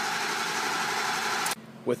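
A 6.0L Power Stroke V8 diesel cranking on its starter without firing, a steady noise that cuts off suddenly about one and a half seconds in. It is a crank no-start: injection control pressure reaches only about 30 psi, too low for the engine to fire.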